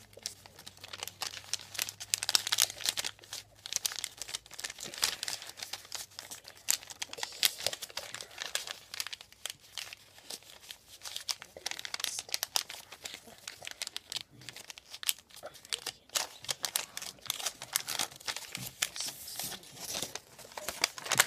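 A sheet of lined notebook paper being folded and creased by hand into a paper fortune teller: irregular crinkling and rustling with many short crackles, coming and going.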